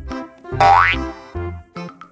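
Bouncy background music played in short notes over a bass line, with a sound effect that rises quickly in pitch about half a second in, the loudest moment.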